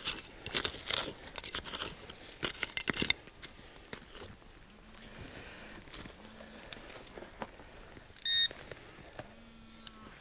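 A hand digger scraping and crunching into soil and leaf litter in quick strokes over the first three seconds. Later, short low hums and, about eight seconds in, one short high beep from the metal-detecting gear signalling a metal target in the hole.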